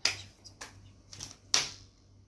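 Tarot cards being handled: a sharp card snap at the start, a softer tick about half a second later, and a louder snap with a brief slide about one and a half seconds in as a card is drawn from the deck and laid on the wooden table.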